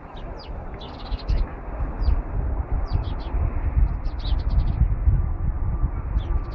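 Small birds chirping, in quick clusters of short chirps every second or so, over a steady low rumble.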